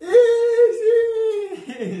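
A person's voice holds one long, high sung note for about a second and a half, then slides down and breaks off into short vocal sounds.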